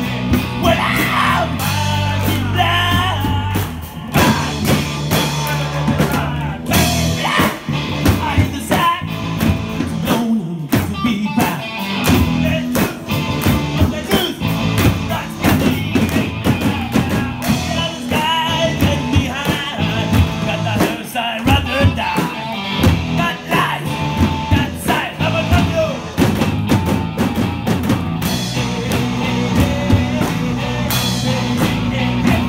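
A live rock band playing a song: drum kit and electric guitars driving it, with a steady bass line and a wavering melodic line over the top.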